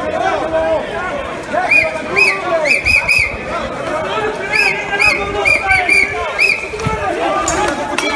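A crowd of people shouting and yelling during a street scuffle, with a run of short, high-pitched cries repeated many times in the middle few seconds.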